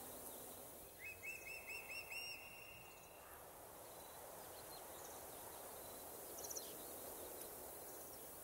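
Faint outdoor ambience with a bird giving a quick run of about seven short rising chirps about a second in, and a few faint ticks later on.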